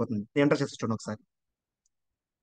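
A person speaking for about a second, then the sound cuts to silence, with one faint click near the end.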